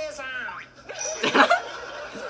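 A man's sudden burst of laughter, loud and brief, a little past halfway through.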